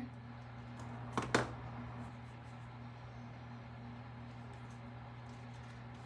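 A steady low electrical hum of room tone, with two short light taps a little over a second in.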